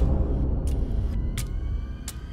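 End-card sound design: a deep low rumble that fades away, with a sharp tick about every 0.7 seconds. Faint thin tones come in about a second in.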